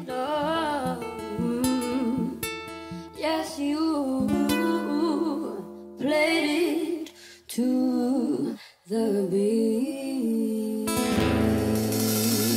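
A female singer performing live with acoustic guitar accompaniment, singing in phrases with a wavering vibrato over sustained guitar chords. A fuller held chord rings near the end.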